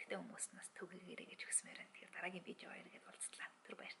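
A woman talking softly in Mongolian, in short phrases with brief gaps.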